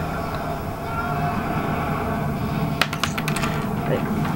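A quick cluster of light, sharp clicks of small plastic Lego pieces being handled, about three seconds in, over a steady low background hum.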